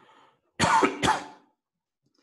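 A man clearing his throat with two short coughs about half a second apart, starting about half a second in.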